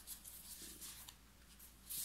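Faint rustling of a deck of tarot cards being handled, rising briefly near the end.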